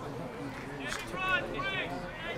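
Faint voices of spectators and players around the pitch. About a second in come two short, high-pitched calls, like shouts.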